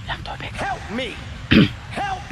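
A man's wordless vocal sounds gliding up and down in pitch, then one loud throat-clearing cough about one and a half seconds in.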